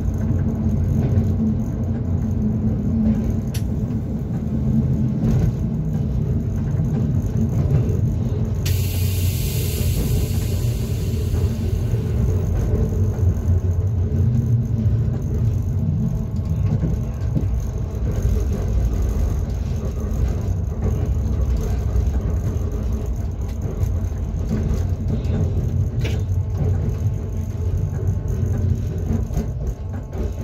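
Class 425.95 electric multiple unit running, heard from inside the cab: a steady low rumble of wheels on rail and running gear, with faint steady motor tones above it. A hiss rises abruptly about nine seconds in and lasts about three seconds.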